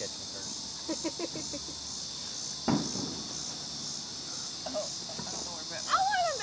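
A steady chorus of insects, crickets chirping as though night had fallen, set off by the darkness of a total solar eclipse. A few soft voices and a single sharp knock about halfway through sound over it.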